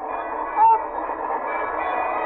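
Indistinct voices mixed with faint music on a narrow-sounding 1940 radio broadcast recording, with one brief higher note about half a second in.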